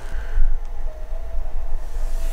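A low, steady rumble with a faint held tone above it.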